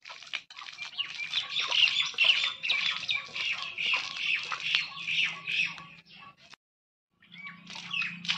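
Birds squawking and chirping, with the light splatter of water flicked by hand from a steel bowl onto a bare-earth courtyard. The sound cuts out completely for about half a second near the end.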